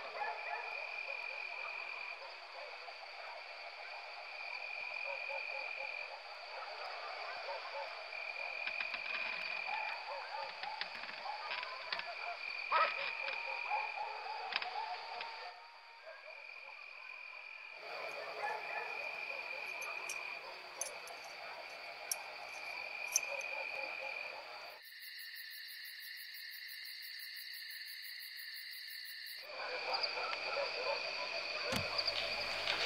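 Night ambience of frogs and insects calling: a chirring call repeats about every two seconds over a steady background chorus. Near the end it gives way for a few seconds to a steadier, higher tone.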